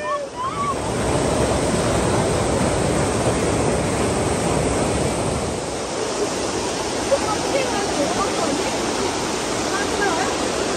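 Mountain stream rushing over boulders and small cascades, a steady loud rush of water close to the microphone.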